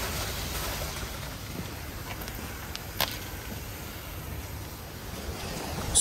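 Spray from a wash lance jetting onto a car's door panel during the pre-wash: a steady hiss of spray on paint, with one sharp click about halfway through.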